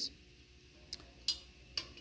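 A few light metallic clicks, about three in the second half, as an Allen key turns the socket screws on a stainless-steel machine head.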